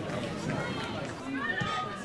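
Outdoor football-pitch ambience of faint, distant voices of players and spectators, with a short call about one and a half seconds in.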